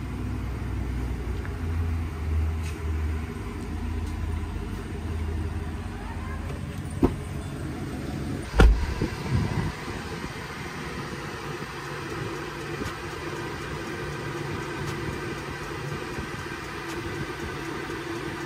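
Pickup truck engine running at a steady low idle, with two sharp knocks about seven and eight and a half seconds in; the second, the loudest, is the cab door shutting.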